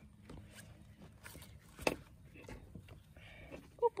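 Faint rustling and light taps from hands working the fabric sleeve and plastic rim of a mesh insect enclosure, with one sharper click about two seconds in.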